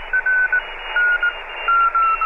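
Morse code received on a radio: a single tone keyed on and off in dots and dashes over steady radio hiss, its pitch drifting slowly downward.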